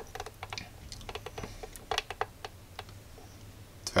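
Detent clicks of a bench power supply's rotary adjustment knob being turned in quick runs as the output voltage is stepped up, with fewer clicks near the end.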